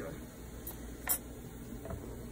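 A short sharp click about a second in, with two fainter ticks around it, over a low steady hum.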